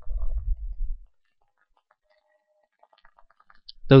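A low rumble for about the first second, then a few faint clicks from a computer keyboard and mouse.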